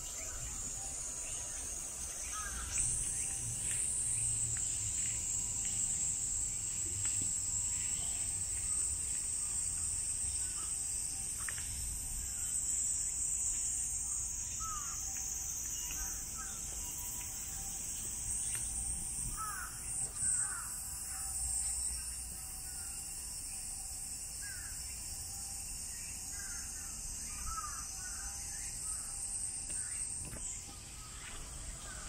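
A steady high-pitched drone of cicadas singing in the trees, the summer insect chorus, with short bird calls scattered through it.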